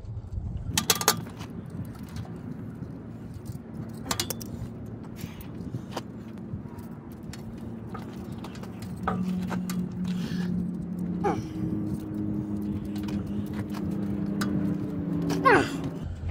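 Small metallic clicks and clinks of a hand crimper and a copper wire terminal as a stripped battery cable end is fitted and crimped tight, with the sharpest clicks about one and four seconds in. A steady low hum joins from about nine seconds in.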